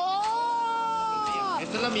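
A single long, high-pitched wailing cry like a cat's yowl. It rises at the start, holds for about a second and a half, then falls off and stops.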